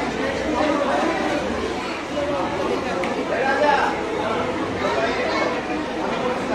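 Many people talking at once in a large hall: steady overlapping chatter with no single clear voice.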